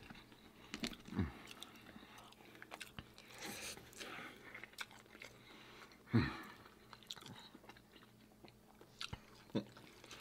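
Faint, close-miked chewing and mouth sounds of people eating food, with scattered small clicks and one brief vocal sound about six seconds in.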